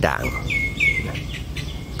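A bird calling: three short notes about a third of a second apart, each dropping in pitch and levelling off, followed by fainter calls.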